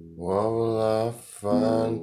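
A man's voice singing two long, drawn-out phrases over strummed acoustic guitar, part of a song.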